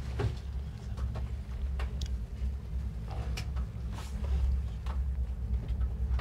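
Steady low rumble inside a moving cable-car gondola cabin, with scattered sharp clicks and knocks at uneven intervals.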